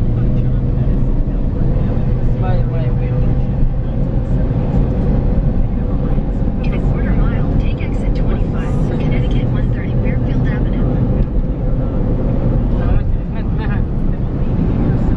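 Steady low rumble of a car driving, heard from inside the cabin: engine and road noise, with faint voices in the background.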